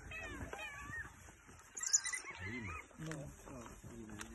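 African wild dogs twittering, a run of high chirping calls in the first second and again about two seconds in. Low human voices murmur in the second half.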